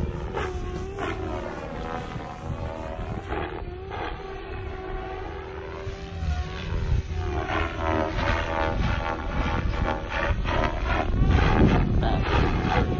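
Goblin 500 Sport electric RC helicopter in flight, its rotor blades and motor whining steadily. As it passes and manoeuvres, the sound keeps sweeping up and down in a swooshing way and grows louder near the end as it comes closer.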